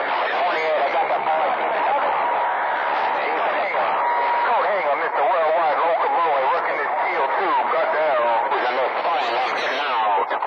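Several distant radio stations talking over one another through a mobile CB radio's speaker: distorted, warbling voices limited to a narrow radio bandwidth, with a brief steady whistle at a couple of points in the first half.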